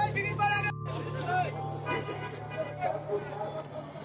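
Background music ends abruptly less than a second in. It gives way to street noise: people talking over a steady low hum of traffic.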